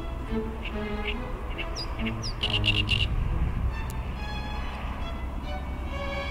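Background violin music, with a small songbird giving a quick run of chirps about two to three seconds in.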